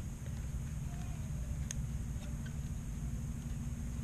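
Light handling noise from small plastic micro-drone parts being fitted together by hand: a few faint clicks and rustles, the sharpest about halfway through, over a steady low hum.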